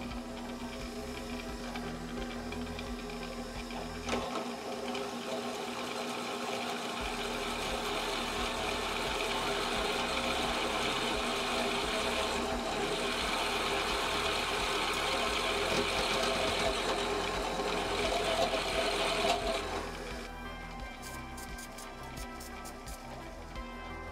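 Benchtop drill press running at about 300 rpm as a 5/8-inch bit cuts into a chrome-plated steel hydraulic cylinder rod: a steady motor hum with cutting noise over it. The cutting noise eases off about 20 seconds in. Background music plays underneath.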